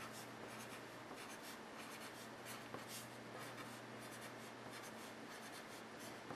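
Pencil writing on paper: a run of faint, short scratching strokes as a column of letters is written.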